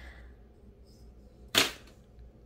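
A lipstick tube dropped into a bin of other lipsticks, landing with a single short, sharp clack about a second and a half in.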